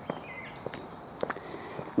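A few soft footsteps on a footpath, with faint high chirping in the background.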